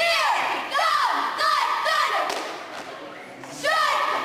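A cheerleading squad shouting a cheer in unison, in short chanted phrases with thumps in the rhythm, echoing in a gymnasium. There is a brief lull a little before the end, then the chant starts again.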